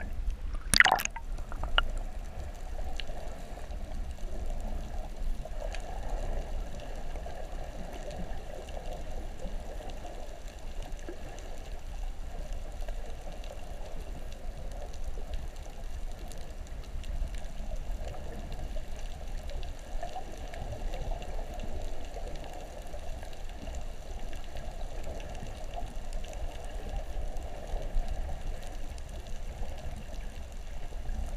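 Underwater ambience picked up by a submerged camera: steady, muffled water noise with a low rumble, and one brief sharp burst of crackle about a second in.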